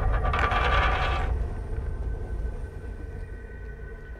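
A small metal spinning top whirring and rattling as it spins on a wooden table, over a low sustained music drone. The rattle is loudest in the first second and then fades, leaving the drone and a faint steady tone.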